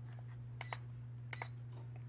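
Two short, high-pitched electronic beeps from the Holy Stone F180C toy quadcopter's transmitter, about three quarters of a second apart, as the video control is pushed down: the signal that camera recording has started.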